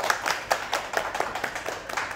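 A small group of people clapping their hands in applause. Many quick overlapping claps start suddenly and keep going.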